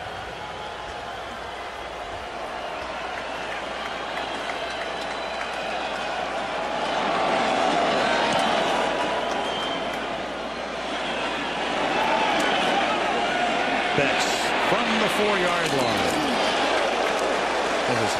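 Football stadium crowd noise, a dense mass of voices that swells about seven seconds in and again from about twelve seconds in, as a kickoff is returned and the runner is tackled. A few sharp clicks come near the end.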